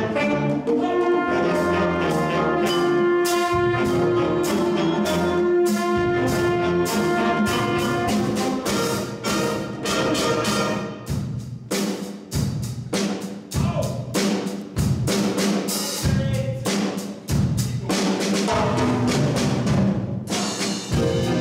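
Jazz big band of saxophones, trumpets, tuba and drum kit playing. It starts with held horn chords, then from about eight seconds in moves into short, punchy ensemble hits with sharp drum strikes.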